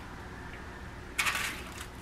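A metal spoon scraping through buttered graham-cracker crumbs in a bowl as they are scooped for a crust: one brief scrape a little over a second in, otherwise quiet.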